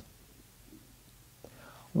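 A pause in a man's speech, almost silent room tone, then a faint click and a soft intake of breath just before he speaks again.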